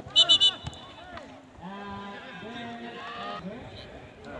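A referee's whistle blown in three short, sharp blasts in quick succession, stopping play, over the shouts of a football crowd.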